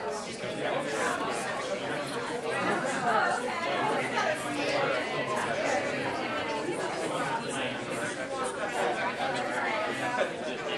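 Many overlapping conversations in a large room: a steady babble of small groups of people talking at once, no single voice standing out.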